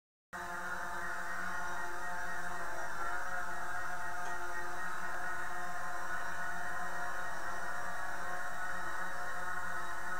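DJI Phantom 4 quadcopter hovering, its four propellers making a steady multi-toned buzz that fades in over the first couple of seconds and then holds even.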